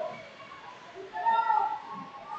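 A person's short, high-pitched shout, about a second in, over a background of hall chatter.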